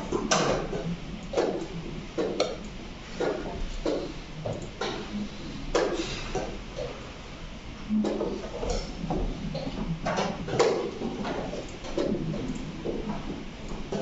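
Irregular sharp clacks, roughly one a second, of wooden chess pieces being set down on boards and chess clock buttons being pressed during blitz play.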